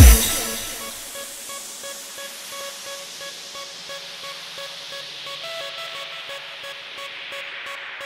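A makina dance mix breaks down: the pounding kick drum stops right at the start. It leaves a quiet hissing noise sweep that slowly rises in pitch over a soft repeating synth note.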